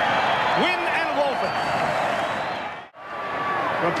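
Rugby league crowd cheering and shouting after a try, with a few single voices calling out about a second in. The sound drops away to almost nothing for a moment near the end, then the crowd noise comes back.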